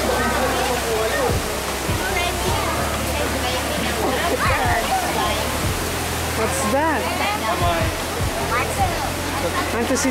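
Steady rush of running water at a stingray pool, with visitors' and children's voices chattering over it.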